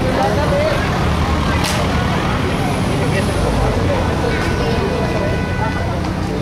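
Several people talking over a loud, steady low rumble of an idling motor vehicle engine, with one sharp click about two seconds in.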